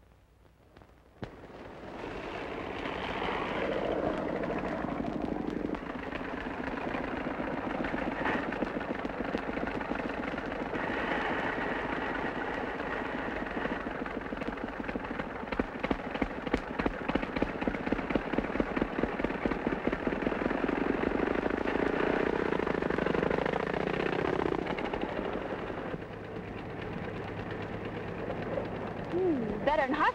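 Old open touring cars driving in a line, their engines chugging and rattling, with a fast run of sharp popping through the middle stretch. The sound fades in about two seconds in.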